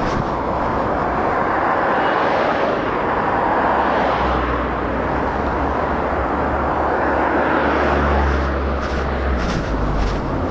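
Steady road and engine noise of a moving vehicle, heard with a covered microphone, with a low engine hum joining about halfway through and fading near the end.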